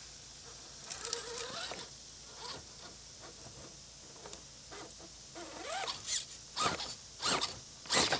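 Gen 8 RC rock crawler's electric motor and geared drivetrain whining in short bursts as it is throttled over boulders, each whir rising and falling in pitch. The bursts come quicker and louder over the last two seconds.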